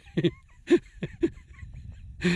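A man laughing under his breath in a few short chuckles about half a second apart.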